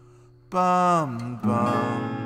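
Acoustic guitar strummed twice, about half a second in and again a second later, the chord ringing out after the second strum, with a short sung falling 'bum' over the first strum.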